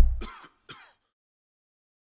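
The tail of an electronic logo-sting jingle: a deep boom fading out, two short swooshing hits, then silence from about a second in.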